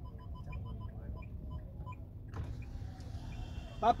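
Low engine and road rumble inside a car's cabin in traffic. About halfway through, street noise from outside comes in and stays louder, and a man's voice calls out loudly at the very end.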